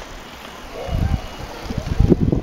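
Open-air street noise heard from a moving bicycle, with wind buffeting the microphone in low rumbles that grow stronger toward the end, and a faint voice calling out briefly about a second in.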